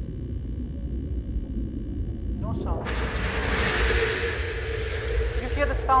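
Film soundtrack playing over a hall's loudspeakers. First a low muffled rumble as a boy goes down under the water, then, about three seconds in, a loud rushing noise swells and fades over a steady held tone as he comes up out of the water.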